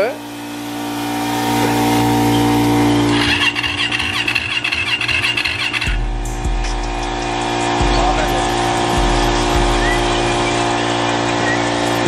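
2018 Yamaha YZ450F's electric starter cranking the engine for about three seconds, starting a few seconds in, without it firing: there is no gas in the tank. Steady droning tones run underneath, with low thuds later on.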